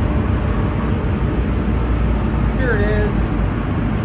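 Steady low rumble of freeway traffic and the car's ventilation, heard from inside a stopped light rail car. A brief gliding sound comes about two and a half seconds in.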